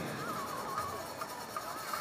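Stadium background sound with faint, distant music with wavering tones running under it, and no nearby voices.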